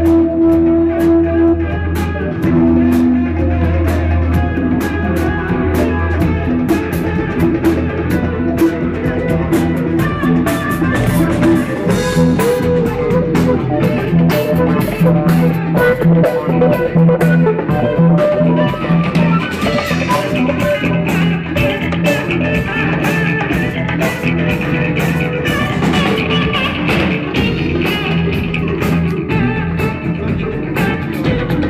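Live rock-fusion band playing: guitar over a drum kit keeping a steady beat, with sustained instrumental notes.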